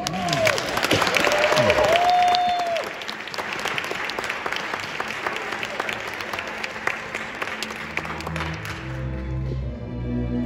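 Audience applauding and cheering, with whoops in the first few seconds. Near the end the clapping dies away as a string orchestra comes in with sustained notes.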